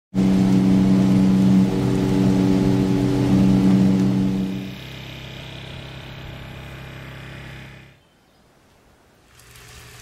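A boat engine running steadily at a constant pitch for about the first five seconds. It then gives way suddenly to a quieter, steady low hum that fades out about eight seconds in, leaving near silence.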